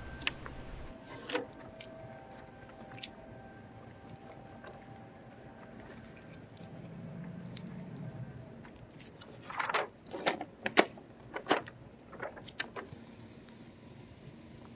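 Blue painter's tape being peeled off a car's painted fender and the paper template it held rustling, mostly quiet handling at first, then a run of short crackles and rustles about ten seconds in as the template comes free.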